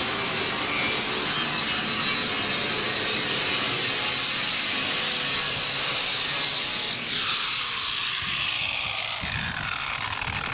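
Angle grinder grinding on the steel plate of a boat hull, a steady gritty whine. About seven seconds in the sound changes and a falling whine runs down as the disc eases off the metal.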